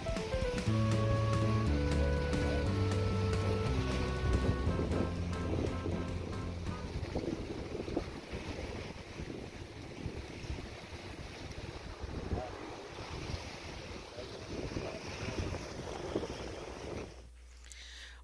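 Instrumental background music fading out over the first several seconds, giving way to wind on the microphone and small waves washing onto a sandy beach. The sound drops away abruptly about a second before the end.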